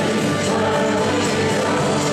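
Group singing of a worship song: worship leaders on a microphone and a standing congregation singing together over instrumental accompaniment.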